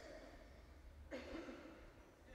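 Quiet room tone with a low hum, and a faint, short human sound about a second in.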